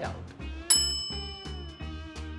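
A bright bell-like ding sound effect about two-thirds of a second in, ringing out and fading over about a second, over background music with a steady low beat.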